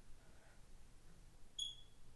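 Near silence: room tone, with one short high-pitched beep about one and a half seconds in.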